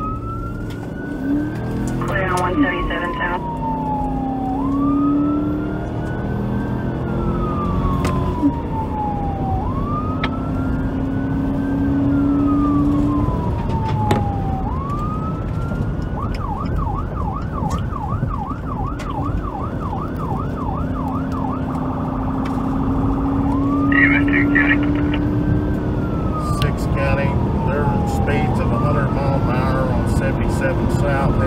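Police car siren heard from inside the patrol car. It runs on wail, each rising and slowly falling cycle lasting about two and a half seconds, switches to a fast yelp of about four cycles a second some sixteen seconds in, holds a steady tone briefly, then returns to wail. The car's engine and road noise sound underneath, with the engine note rising as it accelerates.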